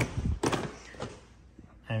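A dull thump and then a sharp knock about half a second in, with a fainter knock about a second in: a hand handling the plastic side panel of a snowmobile.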